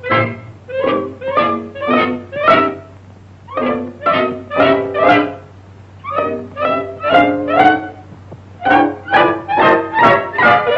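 Cartoon soundtrack music led by bowed strings: short detached notes, about two a second, in phrases of four with brief pauses between, over a steady low hum.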